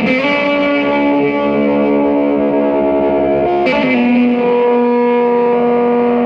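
Music: effects-laden electric guitar playing long, sustained drone notes. A little past halfway, the held notes change to a new chord.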